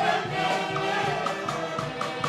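Live band music: a woman singing into a microphone over saxophones and drums, with a steady beat.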